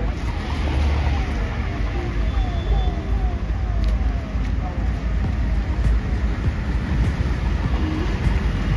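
Road traffic passing, a steady low rumble of cars going by. Through the first half a repeating falling tone sounds about twice a second.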